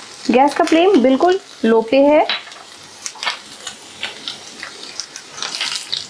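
Sliced garlic frying in hot oil with panch phoran, bay leaf and dried red chillies in a non-stick pan: a steady sizzle with scattered crackles and spatter ticks, stirred with a silicone spatula. A woman's voice speaks over the sizzle for the first two seconds or so.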